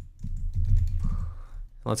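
Computer keyboard typing: a quick run of keystrokes that stops about a second and a half in.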